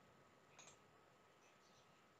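Near silence with a single faint click a little over half a second in: a computer mouse button choosing an item from a right-click menu.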